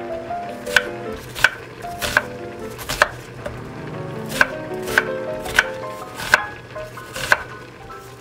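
Kitchen knife slicing an onion on a wooden cutting board: about nine sharp chops, each under a second and a half apart.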